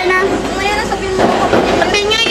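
People's voices at close range, with a steady low tone running underneath and a rougher, noisier stretch in the second half.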